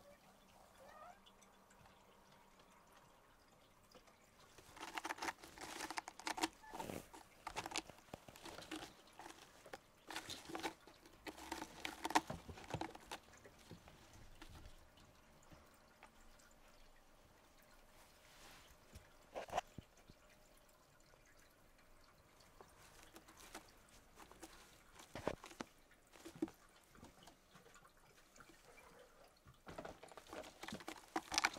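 Cats moving and tussling on a carpeted cat tower: faint scratching, rustling and clicking of claws and fur in bursts, busiest for several seconds early on, then a few scattered knocks.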